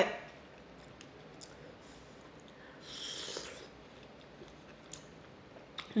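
A person quietly chewing a mouthful of chili, with a few faint mouth clicks and a brief soft hiss about three seconds in.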